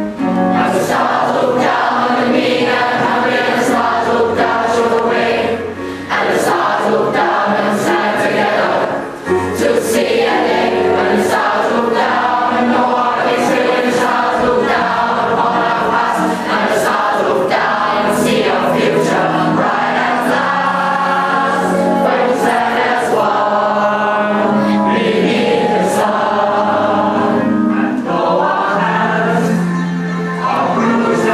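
A large group of teenage boys and girls singing a song together in chorus, many voices on one melody, with short breaths between phrases about six and nine seconds in.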